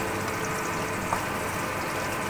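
Small pieces of pork sizzling steadily as they brown in oil in a skillet, over a steady low hum, with a light tap of the spatula about a second in.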